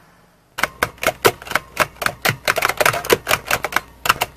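Rapid, irregular clicking of keys being typed, starting about half a second in and going on to the end at roughly six strokes a second.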